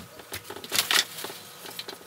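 Packing material crinkling and rustling in a cardboard shipping box as a crib side rail is pulled out, a string of short crackles and light knocks, loudest just before a second in.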